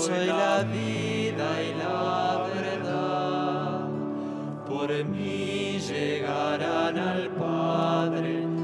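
Slow communion hymn in a church: a wavering singing voice over long, held accompaniment chords that change every few seconds.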